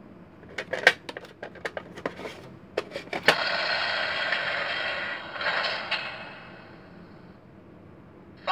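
Plastic clicks and rattles of a Thunderbirds Tracy Island toy playset's mechanism worked by hand for about three seconds. Then the toy's small speaker plays a steady electronic sound effect, which fades out after about three seconds.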